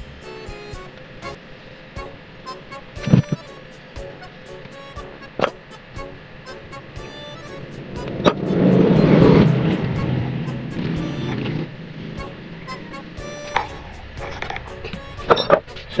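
Small hand tools clicking and tapping against the plastic and metal blade assembly of a blender jar, over background music. A louder noise swells up about eight seconds in and fades over the next few seconds.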